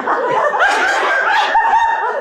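Several voices making high, repeated calls that rise in pitch and then hold, about three a second.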